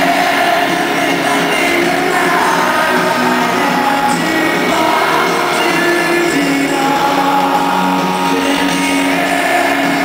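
Rock band playing live at full volume with a vocalist singing over it, recorded from the audience in a large hall.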